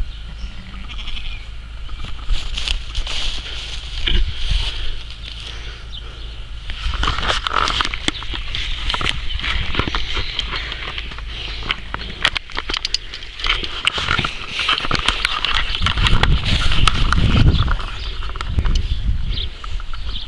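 Sheep bleating in a pen, mixed with the rustling, knocks and clicks of a handheld camera being carried and handled.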